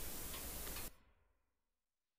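Faint regular ticking, about two ticks a second, over low room hiss, cutting off abruptly about a second in to complete silence.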